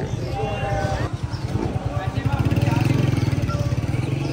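A vehicle engine running close by with a rapid low pulse. It grows louder from about halfway through and then eases off, under background voices.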